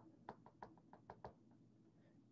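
Faint taps of handwriting on a tablet screen, about eight quick ticks as letters are written, stopping a little past halfway.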